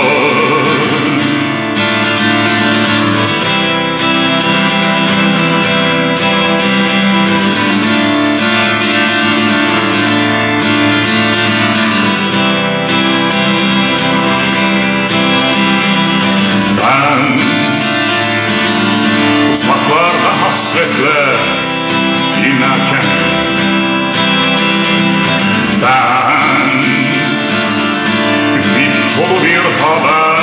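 Music: an acoustic guitar strummed steadily under sustained chords. From a little past halfway, a melody line with sliding notes comes in and out.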